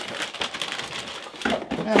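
Plastic anti-static bag around a motherboard crinkling and rustling as it is handled and lifted out of its box.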